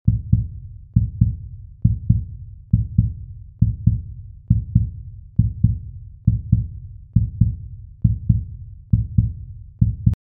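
Heartbeat sound effect: a steady lub-dub of paired low thumps, a little more than one pair a second.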